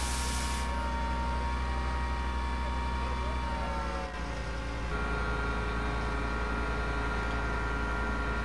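A fire engine's engine and pump running with a steady drone while feeding the hose line. The hiss of the hose spray stops about a second in, and the engine note dips and shifts around four to five seconds in, then runs steady again.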